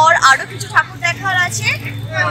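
A woman talking, with a steady low hum underneath.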